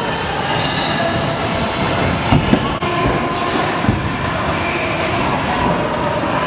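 Steady rolling rumble and clatter of wheels on the ramps of an indoor skatepark, with a few sharper knocks about two and a half and four seconds in.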